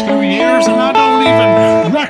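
Electric guitar picking a repeating arpeggio pattern over an A chord, one note after another in steady time. The heavy bass and drum backing drops out right at the start, leaving the guitar to carry the groove with a voice along with it.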